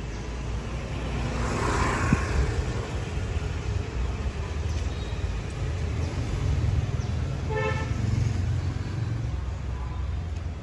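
Street traffic: engines running steadily, a vehicle passing about two seconds in, and a short vehicle horn toot about three-quarters of the way in.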